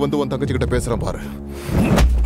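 Voices speaking over a steady background music score, with a rising sweep near the end.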